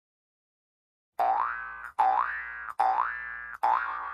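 Intro sound effect for a channel logo: four identical electronic notes, each sliding up in pitch and fading, starting about a second in and following one another about every 0.8 s, each with a click at its start.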